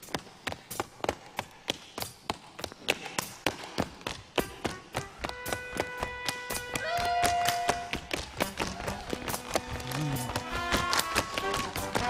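Tap shoes on a stage floor: a solo tap dancer's run of sharp taps, several a second and unaccompanied at first, with orchestral music joining from about halfway and growing fuller near the end.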